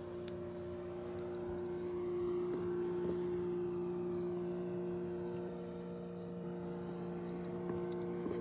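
Insects, crickets by their sound, trilling in a steady high chorus over a steady low hum.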